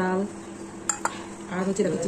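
A stainless steel bowl clinks once, with a short metallic ring, about a second in as it is set down.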